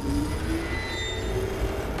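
Science-fiction starship sound effects: a deep, steady rumble with a thin whine above it that steps up in pitch during the first second.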